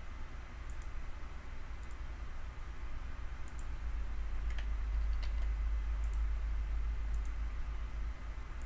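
Computer mouse clicking lightly about eight times, scattered unevenly, over a steady low hum that grows a little louder after the middle.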